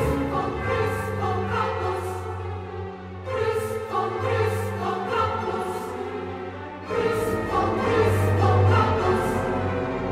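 Recorded music with a choir singing over orchestral backing, the sung phrases shifting about three and a half and seven seconds in.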